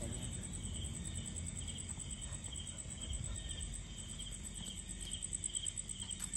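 Night insects, crickets, chirping: a fast, steady, very high trill with a slower chirp repeating about once every half second to second beneath it.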